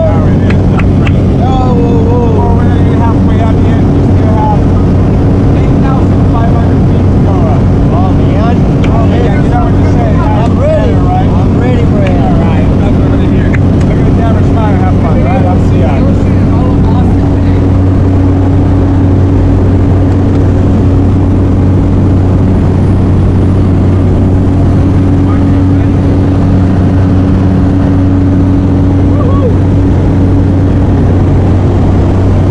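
A jump plane's engine and propeller drone steadily and loudly inside the cabin. For roughly the first half, voices talk and shout over the noise.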